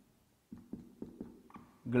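A marker writing on a whiteboard: after half a second of dead silence, a run of light taps and scratches with a brief squeak about halfway through.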